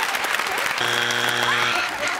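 Studio audience applause. About a second in, a low flat buzzer sounds for about a second: the game-show strike buzzer, meaning the answer is not on the board.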